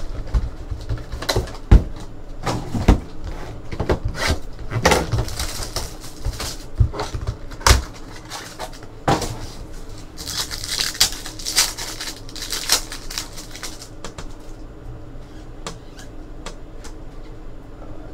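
Hands tearing open and crinkling a foil trading-card pack wrapper and handling the cards inside: irregular crackles and taps, with a denser burst of crinkling about ten seconds in.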